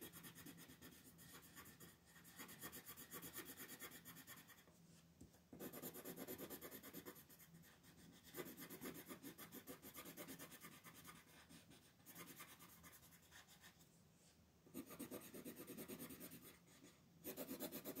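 Coloured pencil shading on paper in quick back-and-forth strokes: a soft, rapid scratching that comes in spells with short pauses between them.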